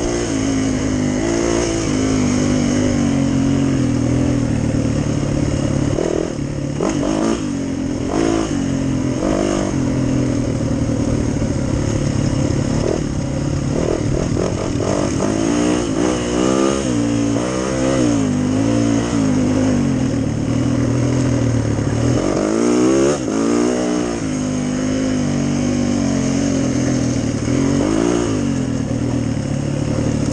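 Dirt bike engine running under constantly changing throttle, its pitch rising and falling as the bike is ridden along the trail, with quick runs of revs around the middle and again past two-thirds.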